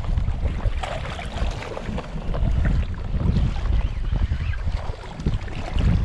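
Gusty wind rumbling on the microphone, with choppy bay water lapping underneath.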